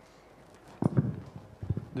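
Hollow knocks and bumps from a handheld microphone being handled: a sudden loud knock about a second in, a smaller bump shortly after, then a voice starts at the very end.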